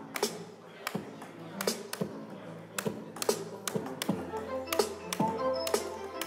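Electronic music from a neural-network synthesizer (Google Magenta models): held synthesized instrument tones over a drum beat with sharp hits about twice a second. The synthesized timbre is steered by tilting phones, and a new low note and fresh tones come in about four seconds in.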